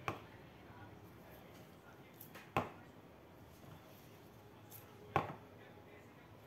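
Three short, sharp knocks about two and a half seconds apart, the middle one the loudest: a plastic spatula knocking against a stainless steel bowl of salt while the salt is being scooped for bottling.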